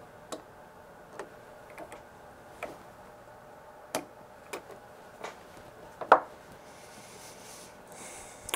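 Scattered light metallic taps and clicks of an SMA torque wrench being fitted onto a connector and handled, with a louder knock about six seconds in.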